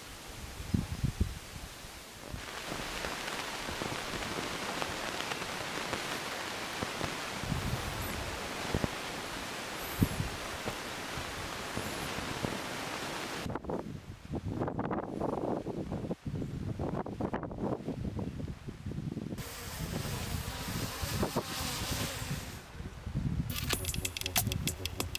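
Outdoor ambient noise: a steady rustling hiss with low gusts of wind on the microphone and a few sharp cracks, changing character twice where the shots change.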